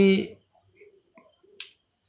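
A man's voice ends a word, then faint handling noises and one sharp, short click about one and a half seconds in.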